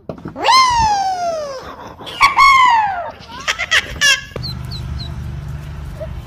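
A young child's voice gives two long, high calls, each rising and then falling slowly in pitch, with shorter cries after them. Near the end come a few tiny high peeps from ducklings over a steady low background hum.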